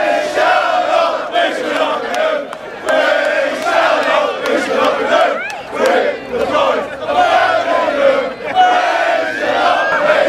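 A group of Aston Villa football supporters chanting loudly in unison, many male voices singing a terrace song in repeated phrases.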